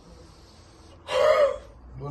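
A man gasps sharply, one loud, breathy, high-pitched cry about a second in that lasts about half a second.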